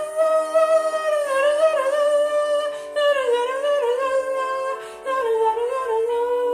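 A woman's soprano voice singing a slow melody solo, holding long notes with vibrato and pausing briefly for breath about three and five seconds in.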